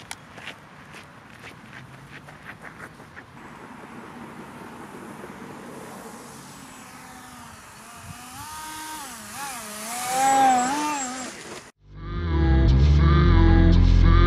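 Running footsteps on gravel for the first few seconds, then the whine of the RC ground effect vehicle's electric motor and propeller, its pitch rising and falling with the throttle and loudest about ten seconds in. Near the end it cuts suddenly to loud music with a steady beat.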